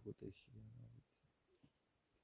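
A faint voice trailing off in the first second, then near silence with a small faint click.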